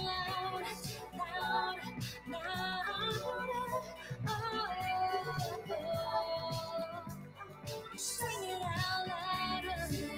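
Recorded pop music playing: a high melodic lead line over a steady backing with a light beat, with no sung words in this passage.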